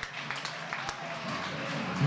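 Faint sound of a football ground after a goal: scattered clapping and distant voices from a small crowd and the players, under a steady hiss.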